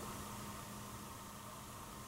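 Quiet room tone: a faint steady hiss with a faint low hum.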